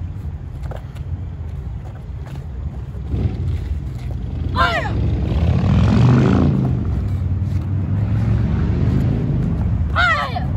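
Child's short high-pitched karate shout (kiai) about halfway through and another right at the end, while a form is being performed. A steady low rumble runs underneath, swelling louder around six seconds in.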